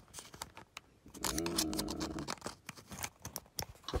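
Small plastic clicks and taps as an SD card is pushed into the slot of a Holley handheld dash display. A short hummed voice sound comes a little after a second in.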